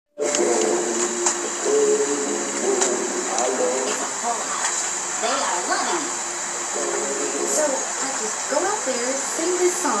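Animated-film soundtrack playing on a television and picked up from the room: a few seconds of music, then cartoon character voices talking, over a steady high hiss.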